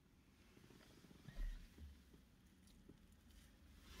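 Near silence inside a car cabin, with one faint low thump about a second and a half in.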